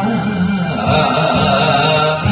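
A man singing an enka song into a karaoke microphone over its backing track, his voice sliding between held notes.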